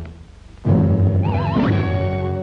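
Orchestral cartoon score: after a short lull the orchestra comes in loud, with low strings holding a chord and a wavering, whinny-like high line over it that rises near the end.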